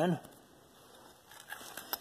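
A man's voice trails off at the start, then it is mostly quiet, with a few faint clicks and rustles in the second half.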